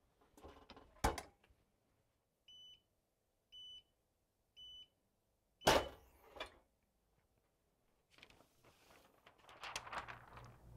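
Hotronix heat press closing with a clunk about a second in, then its timer beeping three short times, about once a second, to signal the end of the dwell. The upper platen then opens with a louder clunk, and the paper cover sheet rustles near the end.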